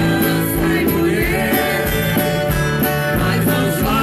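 A live band and singer performing a song with a steady beat.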